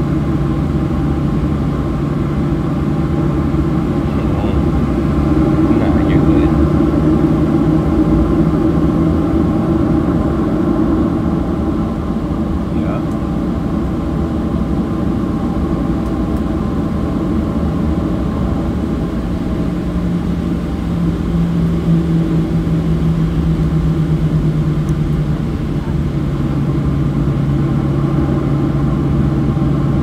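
Steady cabin drone of a Boeing 737's jet engines at low taxi power, heard from inside the passenger cabin: a continuous low hum with a steady tone, swelling slightly twice as the aircraft taxis.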